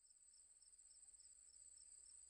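Faint crickets chirping: a steady high-pitched trill with a lower chirp repeating about three times a second.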